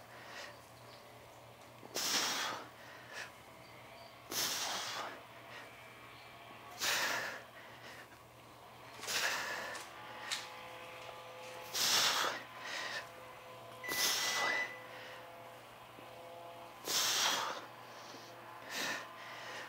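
A person's forceful exhalations close to a clip-on microphone, seven in all, one every two to two and a half seconds: hard breathing in time with the repetitions of a strength exercise.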